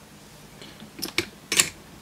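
Quiet room tone, then a few brief clicks about a second in and a short rustle just after, from small hand handling at a workbench.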